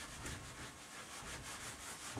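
Whiteboard eraser rubbing across a whiteboard, wiping off marker writing in uneven strokes; faint.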